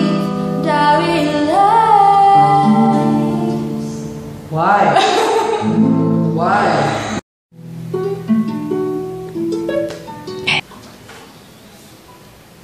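A girl's voice singing a held, sliding note over chords on a nylon-string classical guitar, breaking into laughter about four seconds in. After a brief dropout, the guitar plays a few plucked notes alone.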